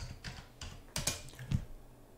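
Typing on a computer keyboard: about half a dozen separate keystrokes, unevenly spaced.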